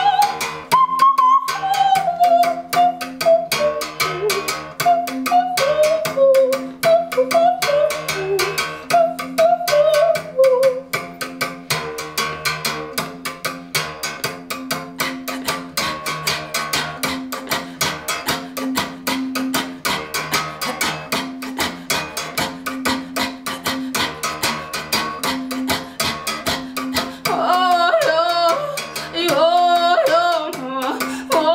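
Xhosa uhadi, a gourd-resonated musical bow, struck quickly and evenly with a stick, alternating between two low notes. A woman sings over it for about the first ten seconds and again near the end.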